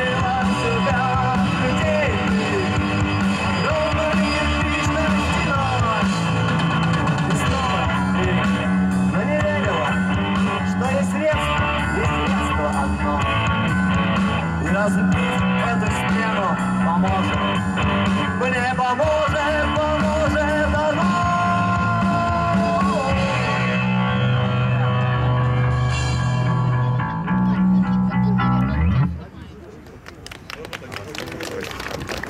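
A live rock band playing through a PA, with a sung vocal over electric guitars, bass and drums. The song ends about a second before the close, and the sound drops away sharply.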